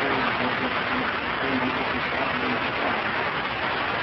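Steady heavy hiss of an old, noisy recording, with a voice faintly heard speaking under it during the first half.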